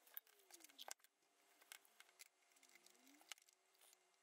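Near silence: room tone with a few faint clicks and small knocks, strongest about a second in and again near the end.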